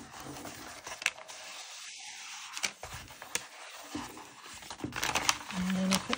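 Backing paper being peeled off a sheet of clear self-adhesive shelf liner while hands smooth the plastic film down onto paper: rustling and crinkling with a few sharp crackles of the peel.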